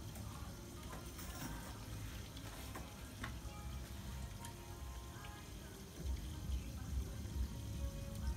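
Steady background noise: a faint hiss over a low rumble, with a few small clicks. The rumble turns uneven and pulsing in the last couple of seconds.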